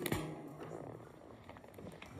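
A single sharp knock just after the start, then faint room noise.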